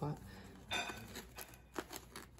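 A brief crinkling rustle and a few faint clicks from a small plastic nursery pot being handled and squeezed to work a tight-rooted succulent free.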